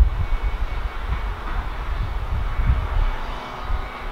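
A steady, low rumbling drone with a faint hiss above it, of the kind a distant engine makes.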